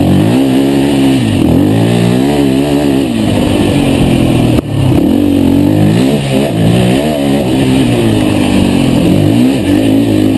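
KTM 450 race quad's single-cylinder four-stroke engine, heard onboard at full race pace, revving up and down again and again as the throttle is opened and chopped. About halfway through there is a sharp knock and a momentary dip before the engine picks up again.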